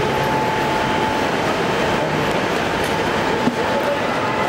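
Loud, steady rumbling background noise with a constant high-pitched hum running through it, and a single brief knock about three and a half seconds in.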